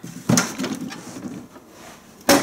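An old metal toolbox being opened: a sharp metallic click from the latch about a third of a second in, then the lid and its cantilever tray rattle and scrape as they swing up, fading within about a second.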